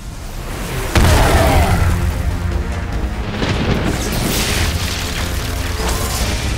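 Dramatic film score with a sudden loud boom about a second in, followed by heavy low rumbling under the music, and a second crash at the very end as a lightning bolt strikes.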